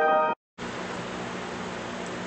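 Granular piano pad from FL Studio's Fruity Granulizer holding a sustained chord, which cuts off abruptly a third of a second in. After a brief silence comes a steady hissing noise wash with a faint low hum.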